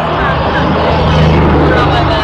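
Steady low hum of a vehicle running, with voices over it.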